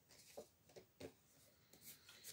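Near silence broken by a few faint, brief rubs and taps of tarot cards being handled and drawn from the deck.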